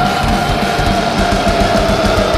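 Thrash metal band playing live: distorted electric guitars and fast, driving drums, with one long held high note that sags slightly in pitch.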